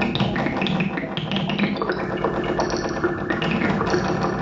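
Improvised electroacoustic music from a hand-played wooden box instrument run through electronics: dense plucked and tapped string sounds over layered sustained tones, with a high tone coming in about halfway through.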